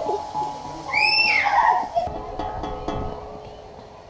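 A child's high squeal about a second in. From about halfway, an outdoor steel tongue drum struck with mallets: a few notes ring out and slowly fade.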